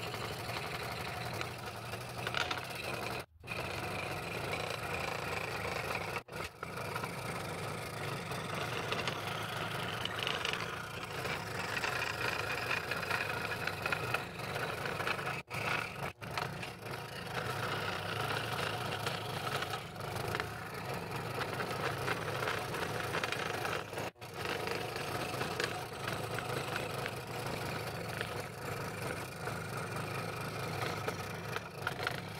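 Scroll saw running steadily, its blade cutting slowly through purpleheart hardwood. The sound drops out for an instant a few times.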